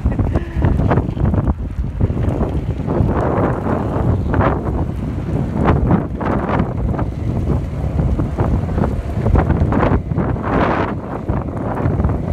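Wind buffeting the microphone while riding at speed, over the low rumble of skateboard wheels rolling on asphalt.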